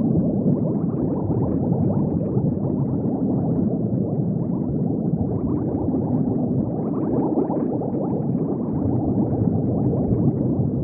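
Steady, dense underwater bubbling: countless small bubbles blend into a continuous, muffled rush with nothing high-pitched in it.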